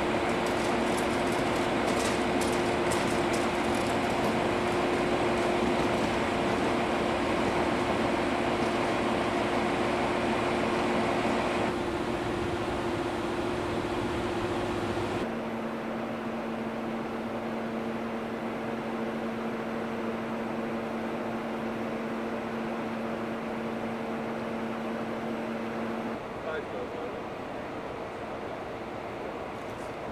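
Diesel engine of an NS Plan U diesel-electric train unit running steadily at standstill, a constant hum with a few held tones. About halfway through, the hum drops a little in level and settles on a lower tone.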